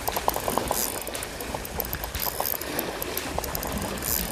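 Spinning fishing reel clicking while a hooked fish is fought on a bent rod, with a quick run of ticks in the first second and sparser clicks after that. Waves wash over the rocks underneath.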